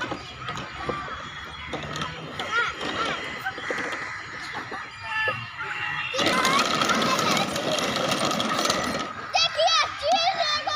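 Children's voices chattering and calling out as they play, with a dense rushing noise from about six seconds in that lasts some three seconds.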